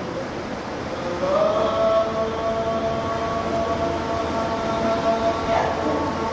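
A steady wailing tone made of several pitches that slides up about a second in and then holds, over a steady rushing background noise.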